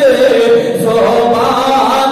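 A man chanting in a sung, melodic style into a microphone, holding long, steady notes.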